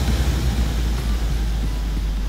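Street noise: a steady low rumble with a light, even hiss over it.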